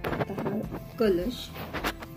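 A woman's voice saying a few words over soft background music, with a short burst of clattering handling noise at the start and a sharp click near the end.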